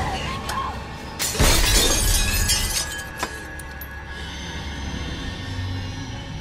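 Glass shattering in a sudden loud crash about a second in, with shards tinkling for about a second after and one last tinkle near three seconds, over a tense orchestral film score.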